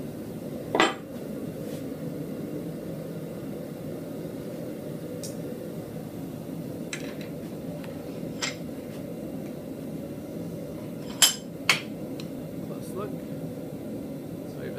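Blacksmith's tongs clinking against the steel workpiece and leg vise as the piece is gripped and lifted out: a few scattered sharp metal clinks, the two loudest close together near the end, over a steady low background hum.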